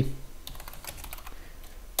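Computer keyboard typing: a short run of separate keystrokes as a brief terminal command is typed and entered.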